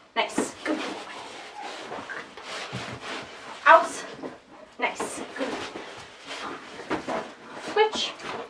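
Belgian Malinois playing tug on a fabric tug toy: scuffling, knocks and thumps of the struggle, with a few short vocal sounds, one just after the start, one midway and one near the end.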